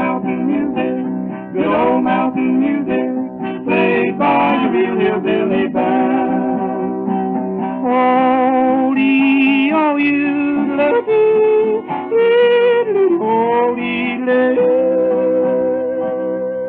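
1930s hillbilly vocal trio record with acoustic guitar accompaniment, heard from a 78 rpm shellac disc: wordless vocal and yodelling phrases over strummed guitar, ending on a long held note near the end.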